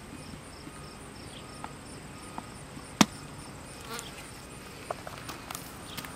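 A horse licking and mouthing a salt block, with scattered soft clicks from its lips and teeth and one sharp click about halfway through. Behind it, a steady high-pitched insect chirping.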